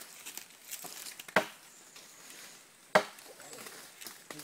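Machete chopping into a felled tree trunk: two sharp blows about a second and a half apart, with fainter knocks between.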